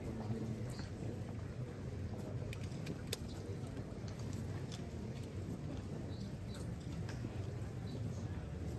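Costaleros' rope-soled shoes (alpargatas) shuffling and dragging on the pavement as they carry a Holy Week paso slowly forward, a steady low rumble with scattered small knocks and one sharp click about three seconds in.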